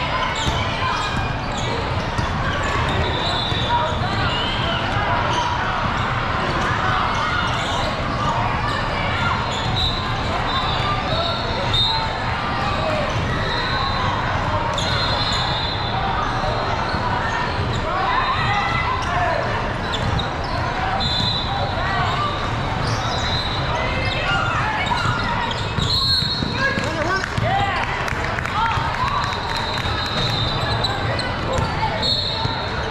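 Basketball game sound: a ball being dribbled on a wooden court, sneakers squeaking in short high bursts, and players and spectators talking and calling out throughout.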